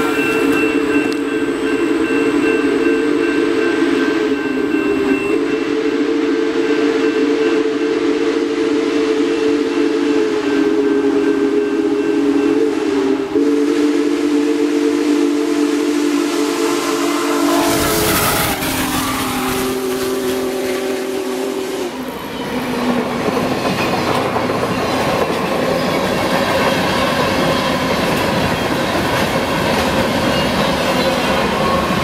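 Union Pacific Big Boy 4014's steam chime whistle blowing a series of long blasts as the locomotive approaches. About 18 seconds in there is a rush of noise as the engine passes, and a last, shorter blast sounds lower in pitch. The train's cars then roll by with a steady rumble and wheel clatter.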